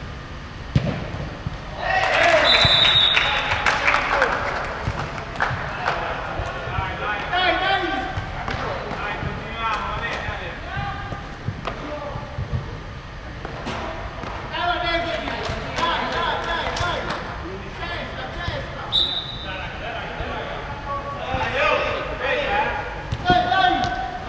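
Indoor five-a-side football: a sharp ball strike about a second in, then players shouting, with short referee's whistle blasts about three seconds in and again near nineteen seconds. Ball kicks and bounces echo through the hall throughout.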